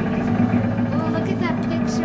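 A steady low drone of held tones, with faint voices over it.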